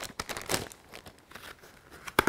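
Plastic bait packaging crinkling and rustling as it is handled, with a few scattered small crackles.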